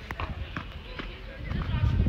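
Footsteps climbing steel stairs, about two steps a second, over a low rumble of wind and handling on the microphone.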